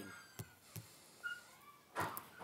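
Faint, separate clicks of typing on a smartphone's touchscreen keyboard, one tap every half second or so as letters are entered, with a brief faint high chirp a little over a second in.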